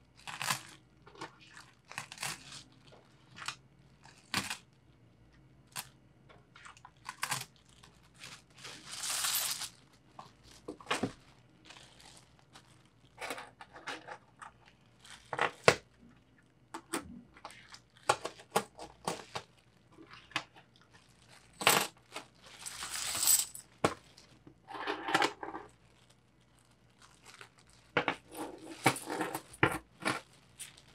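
Metal peso coins clicking and clinking as they are picked up and stacked on a wooden table, in scattered single clicks. Thin plastic bag crinkling in longer bursts about nine seconds in, around twenty-three seconds, and again near the end.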